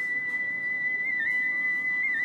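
Intro music: a single high, pure note held steadily, dipping slightly about a second in, over a soft low background.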